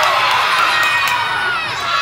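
A crowd of children shouting and cheering together, many voices at once.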